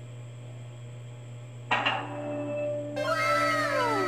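Short electronic sound effect from a TV's built-in speakers: a sharp hit about two seconds in, then, about a second later, several overlapping tones that fall in pitch, over a steady low electrical hum.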